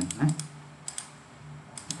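A few sharp clicks of a computer keyboard and mouse, in small groups about a second in and near the end.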